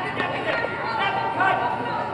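People's voices in a gymnasium, with calls and drawn-out shouts carrying over the hall's echo.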